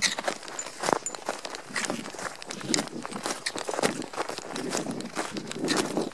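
Footsteps crunching on packed snow at a walking pace, about one step a second.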